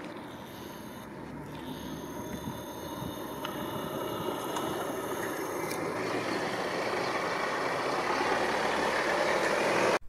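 Road traffic: a car approaching, its engine and tyre noise growing steadily louder.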